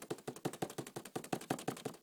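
A fast run of light clicking taps, about ten a second, from hands working at the lid of a cardboard iPad mini box.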